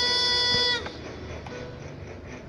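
Recorded pop ballad playing from a screen, ending on one long held note that cuts off suddenly under a second in as the playback stops, leaving only faint room noise.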